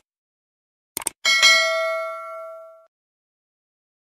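Subscribe-button animation sound effect: a quick double mouse click, then a bell ding that rings and fades out over about a second and a half.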